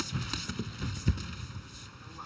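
A quick run of dull thuds from an exchange of gloved punches and kicks in a kickboxing bout, the loudest about a second in.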